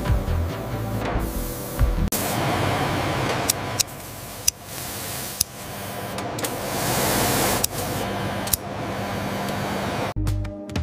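A steady hiss with a few sharp crackling clicks from a CNC laser cutter cutting through a stack of wool fabric, growing louder from about two seconds in, over background music.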